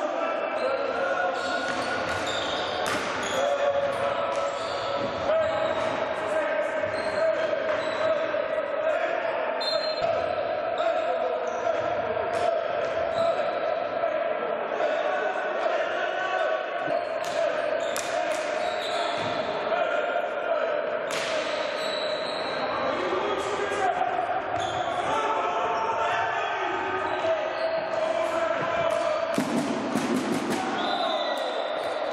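Indoor hockey play in a large sports hall: sharp knocks of sticks striking the ball and the ball hitting the side boards, repeated at irregular moments. Underneath is a continuous wash of voices echoing in the hall.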